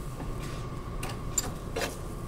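Four faint, light taps about half a second apart over a steady background hum.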